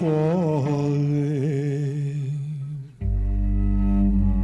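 A male voice humming a wordless melody with vibrato, fading out a little before three seconds in. Then a low bowed cello note starts suddenly and is held steady.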